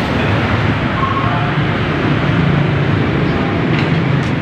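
Steady, loud rumble of road traffic, with faint voices in the background about a second in.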